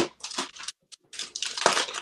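Clear plastic bag of soft-plastic fishing baits crinkling as it is handled and opened, an irregular rustle.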